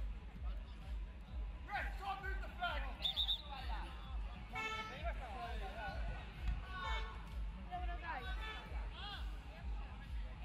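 Scattered shouts and calls from footballers on the pitch and people around it, over a steady low rumble.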